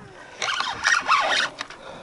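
Spinning reel cranked hard against a heavy fish on the line, giving a rasping sound in a few uneven bursts.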